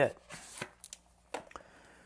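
Cardboard phone-case packaging handled in the hands: a short scuffing rustle, then a couple of light taps.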